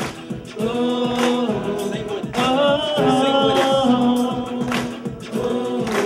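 Live band music: a male voice holds long sung notes over electric guitar, with a percussive beat about every 1.2 seconds.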